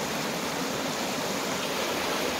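Stream water rushing steadily over the weir and through the bars of a fish trap, spilling into white water below.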